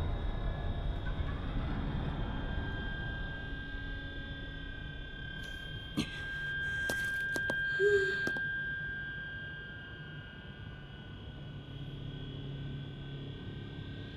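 Anime episode soundtrack playing at a moderate level: background music with a long held high tone over a low rumble, and a few sharp hits between about six and eight seconds in.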